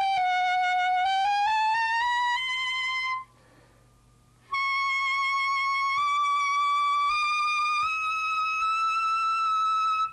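Clarinet playing held high notes as overtones, without the register key. The first note bends down and back up, then stops. After a short pause a long note creeps slowly upward in small steps. The reed has just been given the white-paper treatment to dry out its moisture.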